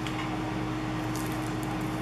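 Steady room tone with a constant low electrical hum and hiss, and a few faint brief rustles of craft supplies being handled about a second in.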